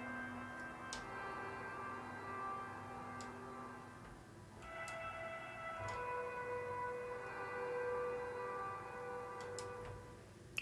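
Ambient pad from the 'Guitars In The Distance' preset of Dark Intervals' Guitars in Space Kontakt library, made from processed clean electric guitar: soft sustained chords that move to a new chord about halfway through.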